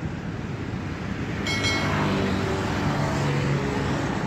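Road traffic on a busy multi-lane road: a steady wash of engine and tyre noise from passing cars and trucks, with a brief higher-pitched tone about a second and a half in.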